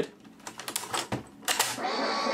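Small plastic clicks and rattles as a cassette tape is flipped and pushed into the cassette deck of a Goodmans Quadro 900 portable TV/radio/cassette player. A sharp click comes about one and a half seconds in as the tape seats, and tape playback of music starts just before the end.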